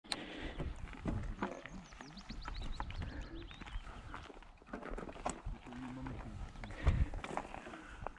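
Mountain bike rolling along a gravel track: tyres crunching over the stones, with frequent irregular clicks and rattles from the bike and a sharper knock near the end.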